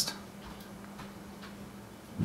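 Quiet room tone: a faint steady low hum with a few soft ticks.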